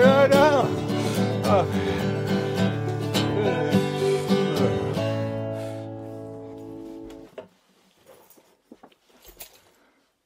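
Strummed acoustic guitar ending a song: a few more strums, then a final chord rings for about two seconds and is cut off abruptly. A few faint clicks and handling sounds follow.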